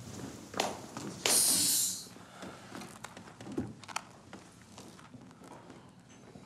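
A short loud hiss about a second in, lasting under a second, among a few soft knocks and movement sounds.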